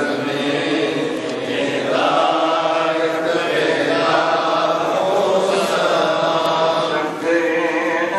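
A man's voice chanting Quranic recitation aloud in long, held melodic phrases, pausing briefly for breath, with the echo of a large prayer hall: the imam leading the standing part of the congregational prayer.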